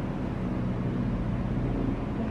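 Steady low rumble of background noise with a faint hum, no distinct events.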